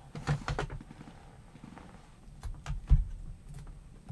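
Irregular light knocks and taps as craft supplies are handled on a desk, a few in the first second and more about two and a half seconds in, the loudest near three seconds.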